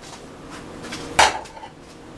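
A single metallic clank of kitchen cookware about a second in, ringing briefly.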